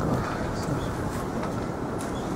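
Steady, even rumbling background noise, heaviest in the low end, with no distinct events.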